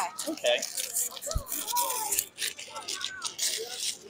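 Wrapping paper crinkling and tearing as a gift is unwrapped in short crackling bursts, with people talking faintly in the background.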